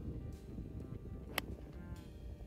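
Quiet background music, with a single sharp click a little past halfway as an 8 iron strikes the golf ball.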